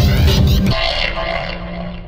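Music soundtrack: a dense, loud passage that breaks off less than a second in, leaving a thinner, fading sustained tone whose high end dies away.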